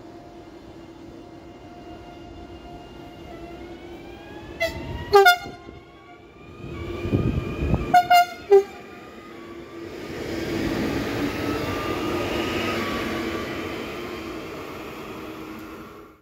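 České dráhy electric multiple unit passing through the station, its electric drive whining and rising in pitch. Two pairs of short horn toots come about three seconds apart near the middle. The wheels then rumble and hiss on the rails as the cars go by, fading near the end.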